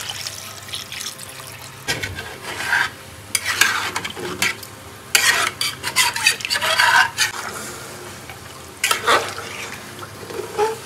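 Water pouring into a large metal cooking pot of rice, meat and potatoes, then a metal ladle stirring the watery mixture. The stirring comes in irregular bursts of scraping against the pot and sloshing.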